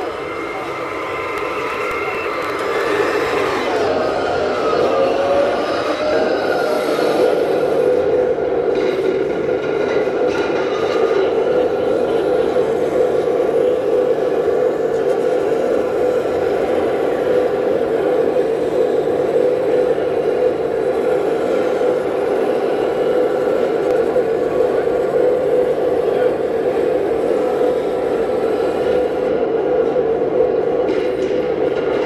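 Digital sound unit of a 1/16-scale radio-controlled M1A2 SEP Abrams tank playing its simulated turbine engine as the tank drives: a steady hum that grows louder a few seconds in. Voices of people chatting are heard in the background.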